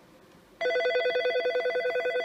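Nortel T7316 desk phone ringing for an incoming call: a fast-warbling electronic ring that starts about half a second in.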